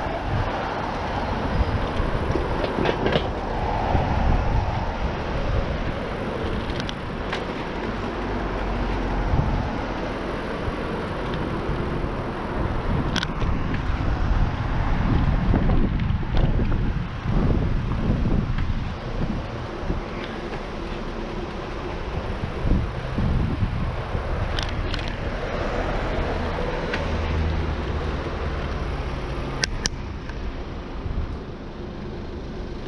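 Road traffic beside a moving bicycle: cars and a van passing in the adjacent lane over steady wind and road noise on the bike-mounted camera's microphone. A few sharp clicks stand out.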